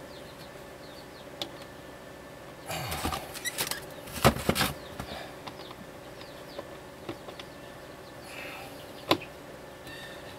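Rustling and scraping of electrical wires being handled and worked with a hand tool at a wall-mounted fuse block, loudest in a short flurry with several clicks about halfway through and one sharp click near the end, over a faint steady hum.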